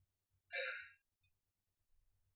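A woman's short exhale, like a sigh, into a handheld microphone about half a second in, lasting about half a second, then near silence.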